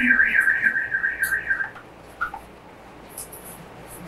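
Whiteboard marker squeaking against the board while writing: a loud, wavering high squeal lasting nearly two seconds, then a couple of short squeaks and faint scratchy strokes.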